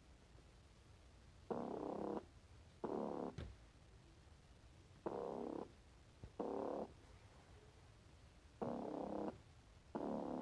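A cat purring close to the microphone: about half-second bursts that come in pairs, one pair every three to four seconds, with each breath in and out.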